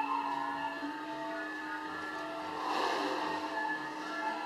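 Balinese gamelan music playing: ringing metallophone tones over a low repeating pulse, with a brief noisy swell about three seconds in.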